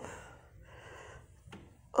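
A faint breath drawn close to the microphone, with quiet room tone around it.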